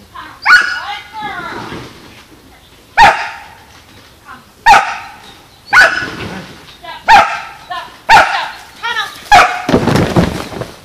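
A dog barking: seven loud, sharp single barks at uneven intervals, with fainter higher yips in between.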